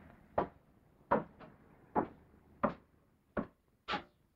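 A man's hard-soled footsteps on wooden steps: six heavy, evenly paced treads about two-thirds of a second apart, the last near the end the loudest.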